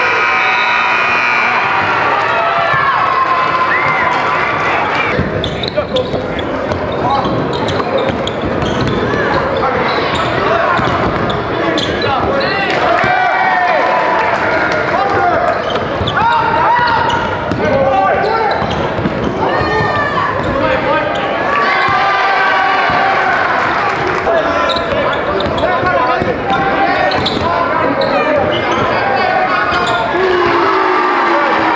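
Basketball game sound: a basketball being dribbled and bounced on the court under a steady mix of crowd and player voices.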